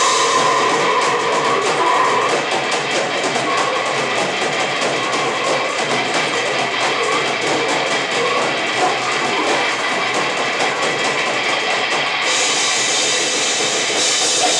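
Grindcore band playing live: distorted guitar over fast, dense drumming. The cymbals come up brighter about twelve seconds in.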